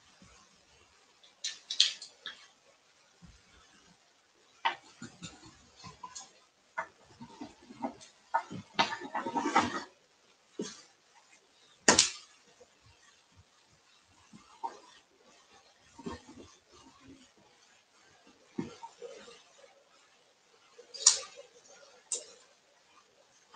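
Rub-on furniture transfer being rubbed down onto a wooden board with a small tool: scattered scratching and rubbing noises with a few sharp clicks, the loudest about halfway through and another near the end.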